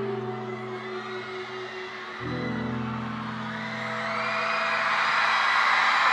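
The closing held chords of a slow ballad, moving to a new chord about two seconds in, as crowd cheering swells and grows louder over the last few seconds.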